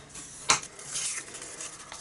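A bone folder drawn along the fold of a piece of cardstock to crease it: one short, sharp scrape about half a second in, followed by fainter rubbing and rustling of the paper.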